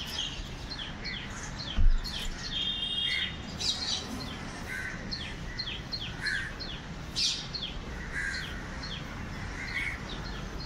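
Birds chirping over and over in short, quickly falling chirps, with a single dull thump about two seconds in.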